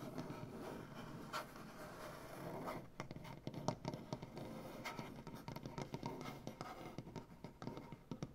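Fingernails scratching a wooden tabletop, continuous for about the first three seconds, then quick clicking taps of nails and fingertips on the wood.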